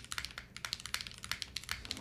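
Fast, continuous typing on a Retro 66 gasket-mounted mechanical keyboard fitted with KTT Rose switches: a steady stream of irregular keystroke clacks, around ten a second.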